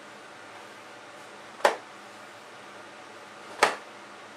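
A hand towel whipped through a hip-rotation swing, giving two short, sharp snaps about two seconds apart.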